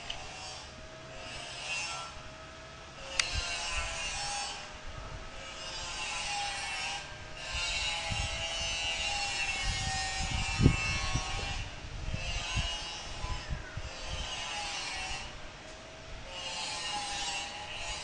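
Hand saw cutting wood in repeated rasping strokes, each about a second long with short pauses between, and a single low thump about ten seconds in.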